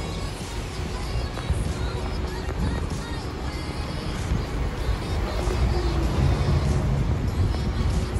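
Music playing over the low rumble of street traffic, with a hybrid city bus driving past; it gets louder in the last few seconds.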